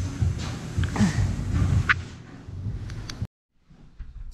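A man's whooping, laughing call over low rumbling noise, cut off abruptly about three seconds in.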